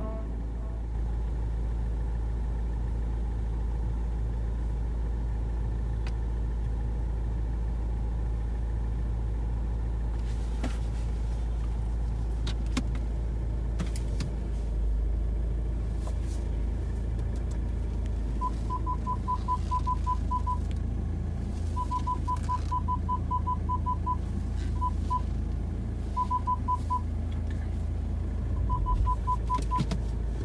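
Car engine idling, heard from inside the cabin as a steady low rumble. About 18 seconds in, reverse parking-sensor beeps start: quick high beeps, about five a second, coming in short runs with gaps between them.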